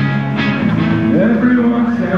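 Live rock band playing loudly, electric guitar to the fore, with a male singer's voice coming in over it about a second in.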